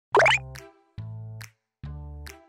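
A quick, loud pop sound effect that sweeps upward in pitch, followed by background music in short separate phrases, the first starting about a second in.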